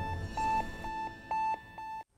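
Electronic beeps from the tail of a TV news theme: a run of short, high beeps at one pitch, about five of them at an uneven pace, fading and then cut off suddenly at the end.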